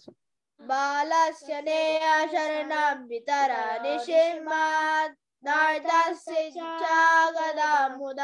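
A child chanting a Sanskrit verse in a slow, sung recitation, long held notes in phrases broken by short breaths, heard over a video call.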